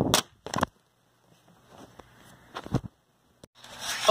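A smartphone dropped corner-first onto the floor: a sharp clatter as it lands and a second knock as it bounces about half a second later, picked up by the falling phone's own microphone. A few fainter knocks a little before the end.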